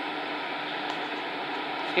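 Steady, even hiss and hum of a Siemens Class 450 Desiro electric multiple unit standing at the platform, with nothing sudden over it.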